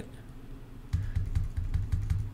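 Computer keyboard keys pressed in a quick run starting about a second in, deleting letters from a typed entry.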